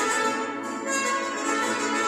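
Mariachi-style ensemble playing, with violins and brass sounding sustained melody notes.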